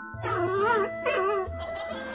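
Puppy whimpering: two wavering whines, the first longer, over background music with held notes.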